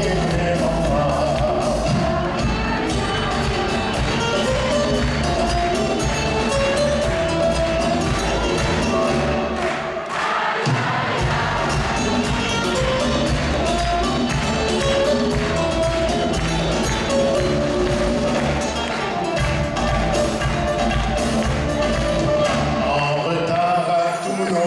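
Live band playing an instrumental passage with a steady beat: acoustic guitars, bowed cello, congas and drum kit. The bass drops out briefly about ten seconds in, then the full band returns.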